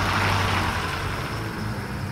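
Bus engine in a film soundtrack as the bus drives away: a steady low engine rumble with a rushing noise that is strongest early on and slowly fades.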